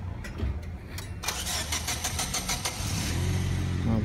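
A car engine being cranked by its starter, a quick even chatter for about a second and a half, then catching about three seconds in and settling into a steady idle.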